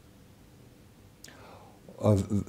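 Quiet studio room tone; about a second in, a faint click of the lips followed by a short, soft intake of breath before speech resumes.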